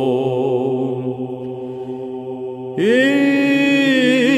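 Greek Orthodox Byzantine chant in the plagal first mode: a solo male chanter over a steady held low drone. About three seconds in, the chanter starts a new phrase with a slide up into a long held note.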